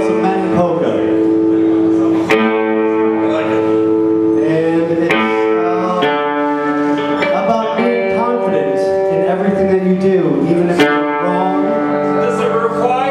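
Small rock band playing live: electric guitars ringing out held chords that change every few seconds, with sharp drum and cymbal hits at the changes and a man singing into the microphone.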